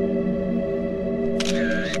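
Slow, steady ambient background music of sustained tones. Near the end, as the slide changes, a short slideshow transition sound effect lasting about half a second, with a dipping tone in it.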